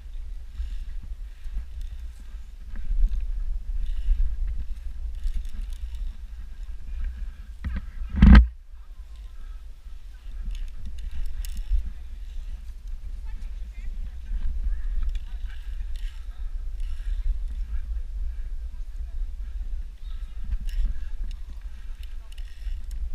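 Wind buffeting a body-worn action camera's microphone as a low, uneven rumble, with faint distant voices. One loud thump about eight seconds in.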